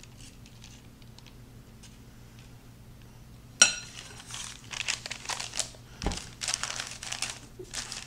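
Parchment paper lining a baking pan crinkling and rustling in repeated bursts as it is handled and straightened. The crinkling starts with a sharp knock, the loudest sound, about three and a half seconds in. Before that there are only a few faint light ticks.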